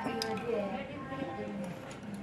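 Faint voice in the background, with a few light clicks near the start.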